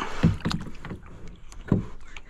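A large channel catfish being hauled over the side into a plastic kayak: a few dull knocks against the hull, the loudest near the end.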